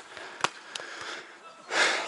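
A player's heavy breath out, close to the microphone, near the end. Before it comes a single sharp click about a quarter of the way in.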